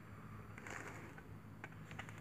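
Faint, steady low drone of distant military helicopters, with a few soft clicks of the phone being handled in the second half.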